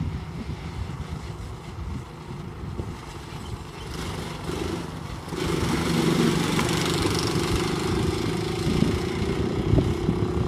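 Go-kart engines running, getting louder about five seconds in, with one engine's pitch slowly rising after that.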